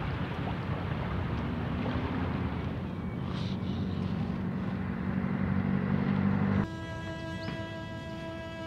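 Sea sound of small waves washing ashore: a steady rushing noise with a low hum underneath that grows louder, then cuts off abruptly about six and a half seconds in. Held string notes take over after the cut.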